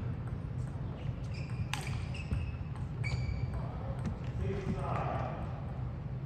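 Table tennis rally: sharp clicks of the celluloid-type plastic ball off the paddles and table, the loudest about two seconds in, with a few short high squeaks of shoes on the court floor. The rally stops after about four seconds, and a voice follows near the end over a steady hall hum.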